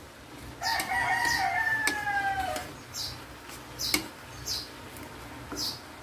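A rooster crowing once, a drawn-out call of about two seconds that dips at the end, starting about half a second in. Under it and after it, a spatula scrapes and tosses bean sprouts in a wok about once a second, with one sharp click of the spatula on the pan.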